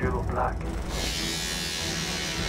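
Electric hair clippers switched on about a second in, giving a steady high buzz as they cut hair.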